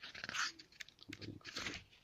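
Paper pages of a thick hardcover book being turned by hand: rustling swishes, the loudest a little under half a second in.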